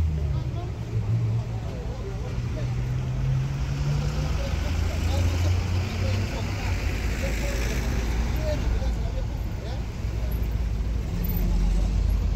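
Street sound: a low vehicle engine rumble that shifts in pitch a few times, over traffic noise and indistinct voices in the background.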